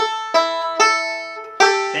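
Five-string resonator banjo picked slowly, note by note: four ringing plucks, the last coming after a longer pause, played as a bluesy G7 lick with a thumb-and-finger pinch on the third fret.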